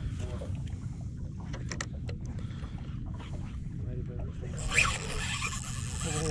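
Steady low rumble of wind on an action camera's microphone over open water, with faint far-off voices now and then. A hiss rises near the end, peaking briefly about five seconds in.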